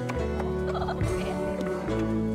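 Cleaver chopping raw pork on a wooden chopping block, a few knocks over steady background music. A short gobbling call from a fowl, likely a turkey, cuts in a little under a second in.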